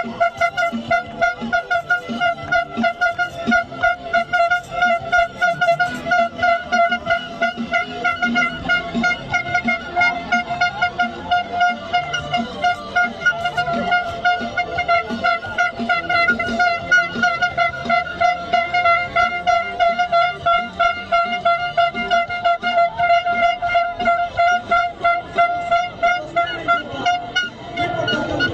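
A steady horn tone, flat in pitch, held without a break over a fast pulsing beat. It cuts off abruptly near the end.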